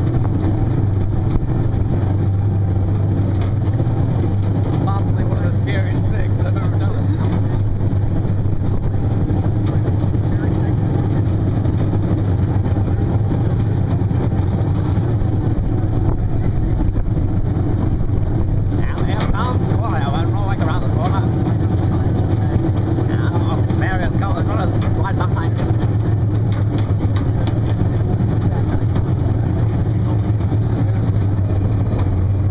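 A steady, loud low hum like a running engine, unchanging throughout. Faint distant voices come through about five seconds in and again near the twenty-second mark.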